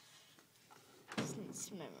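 Faint room tone for about a second, then a child's soft speaking voice begins.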